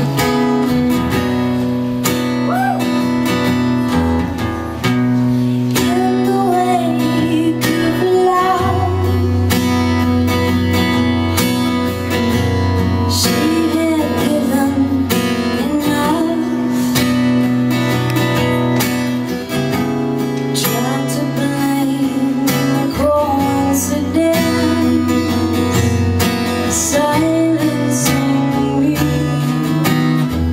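A folk song performed live: a woman singing a slow melody over strummed acoustic guitar.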